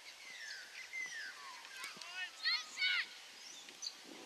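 Birds calling in the trees: a few falling whistled notes, then two loud harsh calls about two and a half and three seconds in.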